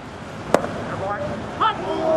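A baseball pitch hitting the catcher's mitt with one sharp pop about half a second in, followed by brief voices.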